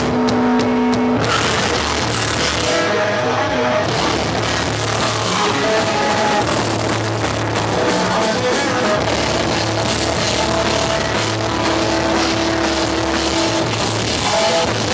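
Melodic hardcore band playing live: distorted electric guitars, bass and drum kit, with the full band coming in about a second in. A vocalist sings into the microphone over it.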